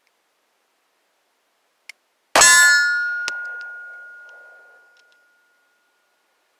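A single 9 mm shot from a Taurus G2C pistol, the first round fired through the new gun, followed by a metallic ringing that fades over about two and a half seconds. A faint click comes just before the shot.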